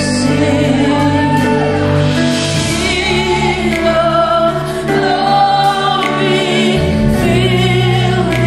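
Live gospel worship song: a woman sings lead into a microphone with backing singers over a band, and a bass guitar moves between low notes. Her long held notes waver with vibrato.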